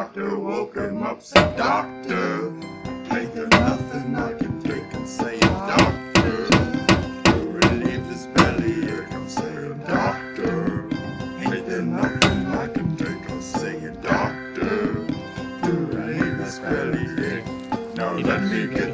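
Whole coconut being bashed against a hard edge: sharp thunks, one at a time early on, then a quick run of about a dozen blows, then one more. They sound over a sung song with guitar.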